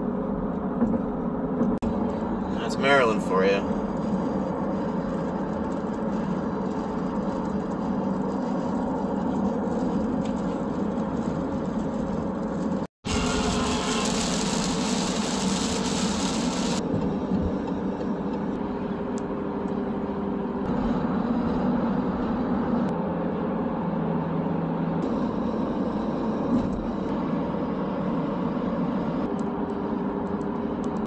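Steady road and engine noise of a car driving at highway speed, heard from inside the cabin. A brief wavering, pitched sound comes about three seconds in. After a short dropout about thirteen seconds in, a few seconds of added high hiss follow.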